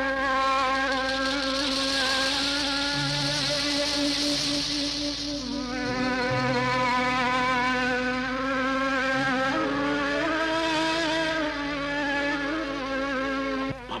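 Old film soundtrack: one long held note that wavers slightly, with a lower note coming and going beneath it.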